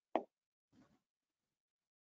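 Near silence, broken just after the start by one short, soft pop that dies away almost at once, with a much fainter rustle about a second in.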